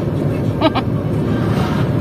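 Steady road and engine rumble inside a moving car's cabin, with a brief voice sound about two-thirds of a second in.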